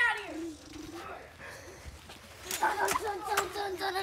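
Children's voices: a child calling out, then a long held vocal sound in the second half with a few sharp clicks over it.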